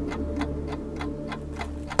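Steady, even ticking, about four or five ticks a second, over a low steady hum.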